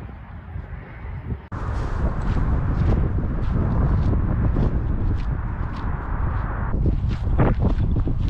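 Wind buffeting the microphone, with footsteps on grass at about two steps a second; the sound comes in suddenly about a second and a half in.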